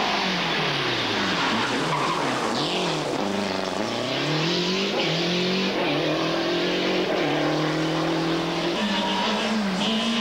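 Lancia Delta rally car's turbocharged four-cylinder engine at full effort, its revs dipping and rising several times as it lifts and accelerates through corners, then holding a long, slowly climbing pull. The sound changes abruptly about nine seconds in.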